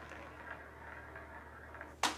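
Faint rolling rattle of a carbon steel ball running along the rail after being launched by the magnet, dying away near the end.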